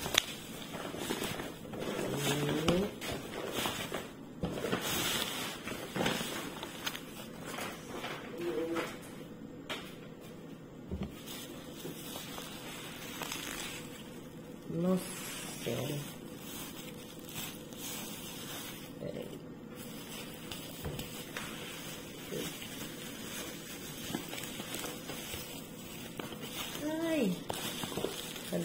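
Bubble wrap and kraft paper rustling and crinkling as a packed box is unwrapped by hand, with a few brief voice sounds now and then.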